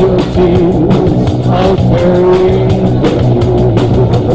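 Live rock band playing loudly: a steady drum beat under bass and chords, with one held lead line that wavers and bends in pitch.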